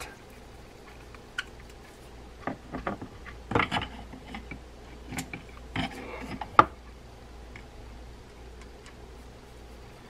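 Scattered small clicks and clatters of a screwdriver, loose screws and the reel body being handled as the side-plate screws are set into a D.A.M. Quick 441N spinning reel, with one sharp click about six and a half seconds in.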